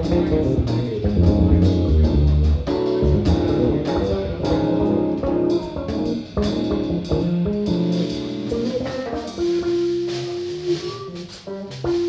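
Live instrumental jam of electric bass, keyboards and drum kit. The playing is dense with steady drum and cymbal hits for about nine seconds, then thins out to a long held note and sparse notes near the end.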